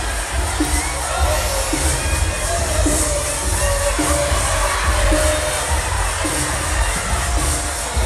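Live band playing a slow groove with a steady beat about once a second and a heavy bass, under the noise of a cheering concert crowd.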